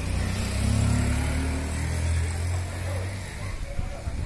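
Motorcycle engine running close by, a low rumble that fades away about three and a half seconds in.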